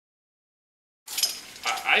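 Dead silence for about the first second, then a wire whisk scraping and clinking against a metal saucepan as eggs are whisked while they coddle in a double boiler.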